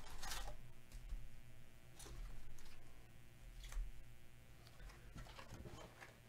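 Gloved hands handling a cardboard trading-card box and its foil packs: a few short rustles and scrapes, over a faint steady hum.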